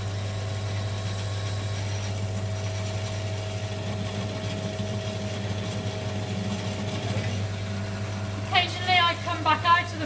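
Pillar drill motor running steadily while a large Forstner bit is fed down, cutting a flat-bottomed hole in wood.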